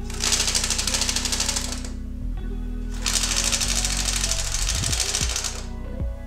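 DIY split-flap display modules flipping, their flaps clattering rapidly in two bursts with a pause of about a second between them while the characters change. The first burst lasts about two seconds and the second about three, stopping shortly before the end.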